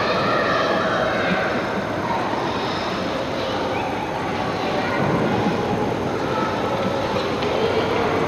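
Steady rushing noise of a busy skating rink, with faint children's voices and calls in the background.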